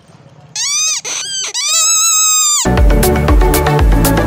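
A small plastic toy whistle blown three times, a short blast, another short blast and a longer one, each with a shrill tone that sags in pitch at its start and end. About two-thirds of the way in, loud electronic background music with a heavy bass beat comes in.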